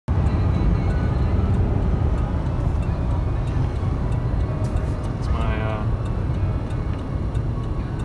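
Steady road and engine noise heard inside a moving car's cabin at highway speed: a low, even rumble of tyres and engine.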